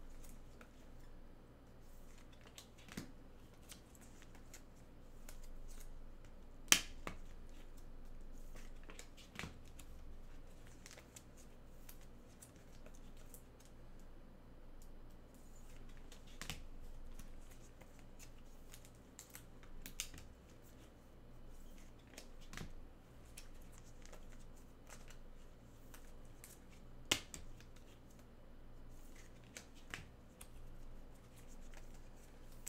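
Trading cards being handled and sorted through by hand: faint rustling with scattered sharp clicks and taps, the loudest about seven seconds in, over a low steady hum.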